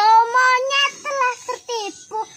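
A high-pitched, child-like voice singing in short held phrases.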